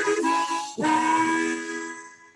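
Harmonica playing the closing phrase of a song: a few chords, then a held chord that fades away near the end.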